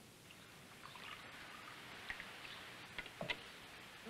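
Faint steady hiss of flowing river water, with a few soft ticks about three seconds in.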